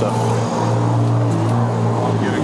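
A motorcycle engine idling steadily, with the idle pitch dipping slightly about a second and a half in.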